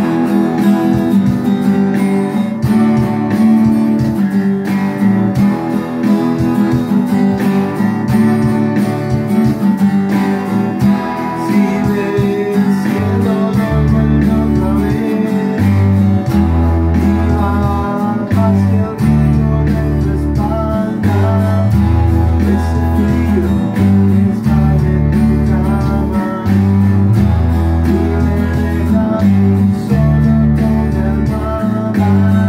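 Two electric guitars and an electric bass playing a song together. Strong low bass notes come in about halfway through, in a rhythmic pattern under the guitars.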